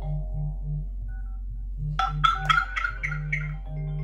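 iPhone ringtones playing a mallet-like melody of sustained notes over a low, pulsing buzz. About two seconds in, a louder quick run of bright chiming notes comes in, falling in pitch, and fades after a second and a half.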